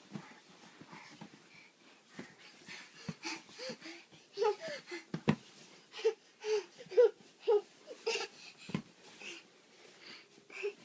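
A toddler giggling in short, breathy bursts, coming in a quick run of about two laughs a second in the second half. There are a couple of soft thumps as he rolls about on the bed.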